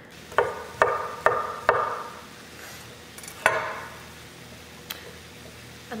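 Vegetables cooking in a frying pan with a splash of water, a faint steady sizzle, broken by sharp knocks: four in quick succession in the first two seconds, one more about three and a half seconds in.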